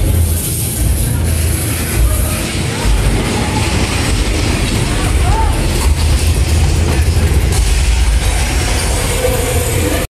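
Amusement park ride cars running along their track, a loud steady low rumble with rattling.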